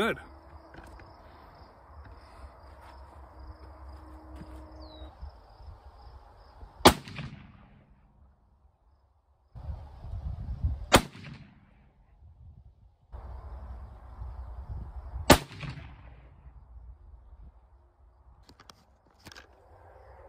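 Three rifle shots, a few seconds apart, from a Thompson Center Compass bolt-action rifle in .308 Winchester, each a sharp crack with a short echo. It is firing a mild, low-pressure handload of 150-grain FMJ bullets over IMR 4831 powder.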